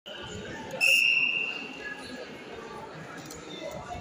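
A referee's whistle blown once about a second in, a single shrill blast that fades over about a second, signalling the start of a wrestling bout. Voices chatter in the hall beneath it.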